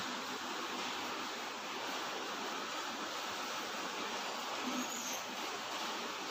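Steady, even background hiss with no distinct clicks or knocks.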